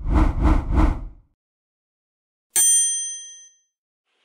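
Edited intro sound effects: three quick deep beats in the first second, then a single bright bell-like ding about two and a half seconds in that rings out for about a second.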